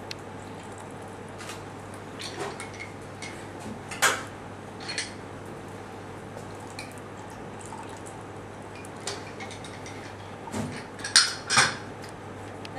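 Hinged hand-held citrus squeezer pressing citrus juice into a mixing glass, with scattered clinks and knocks of metal bar tools against glass. The loudest knocks come about four seconds in and in a quick cluster near the end.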